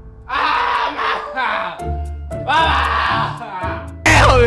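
A man's wordless, pitch-bending vocal sounds, in several bursts, over background music with a low bass line.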